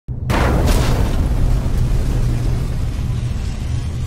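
A deep boom hits right at the start and fades over about half a second, leaving a sustained low rumble. It is an intro sound effect under a title card.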